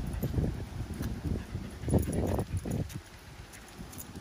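Irregular footsteps and rustling of a person walking on asphalt while holding a phone, uneven and low-pitched, with a slightly louder burst about halfway through.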